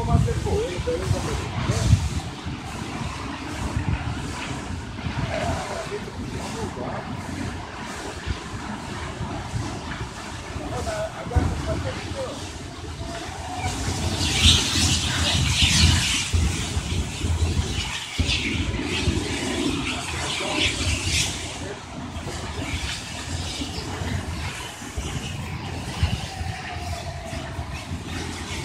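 Voices talking in the background over a steady low rumbling noise, with louder stretches of hissing about halfway through and again a few seconds later.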